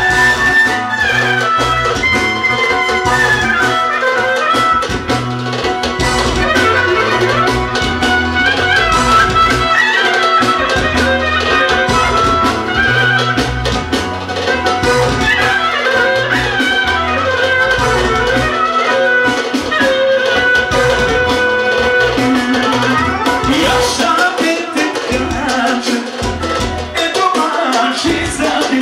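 Live band music led by a clarinet playing a winding, ornamented melody over a steady bass and drum beat.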